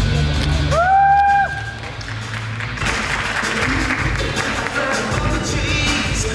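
Posing music with a steady beat. About a second in, a single rising shout comes from the audience, and from about three seconds on, cheering and applause.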